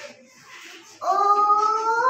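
A child's voice singing one long held note, rising slightly in pitch, starting about a second in after a brief pause.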